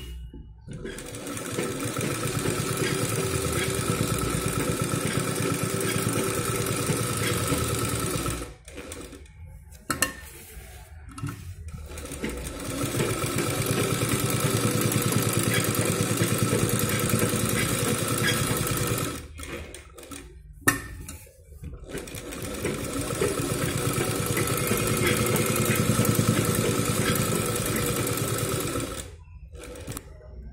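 Domestic sewing machine stitching through fabric in three long runs of several seconds each, each run picking up speed at its start, with short pauses between them. A single sharp click sounds in the second pause.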